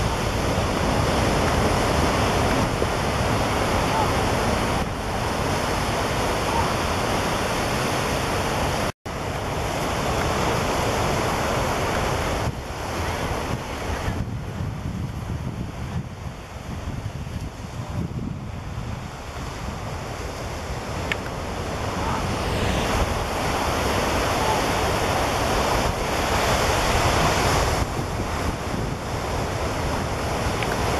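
Ocean surf breaking and washing up a beach, with wind on the microphone. The sound drops out for a moment about nine seconds in.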